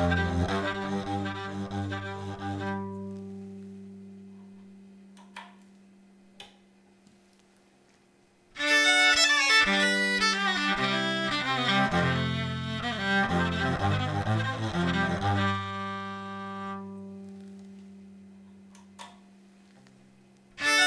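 Six-string electric violin, bowed and played direct through an Avalon U5 Class A preamp, covering deep cello-like low notes as well as high ones. A phrase ends early on with notes that ring and fade slowly into a near-silent gap with a couple of faint clicks. Playing starts again about eight seconds in with the preamp's second preset EQ curve (no high-cut), then fades out again with long ringing notes.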